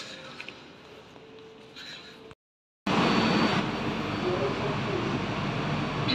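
Faint terminal hum with a steady tone, then a sudden cut to a louder, steady running noise inside an airport people-mover train car.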